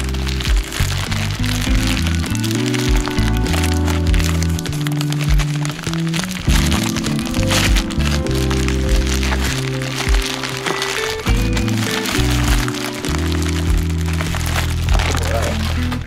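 Background music with a steady, repeating bass line, over the crackling and crinkling of a plastic poly mailer and bubble wrap being torn open and handled.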